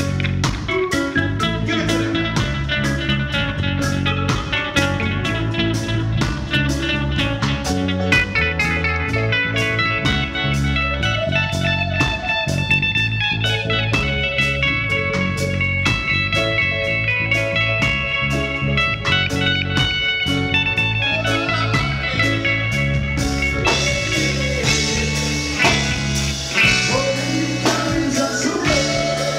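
Live reggae band playing an instrumental passage with a steady beat: bass and drums under a Telecaster-style electric guitar playing lead lines.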